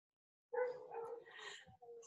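A dog whining faintly: a thin, held, high note that starts about half a second in and wavers a little until it stops.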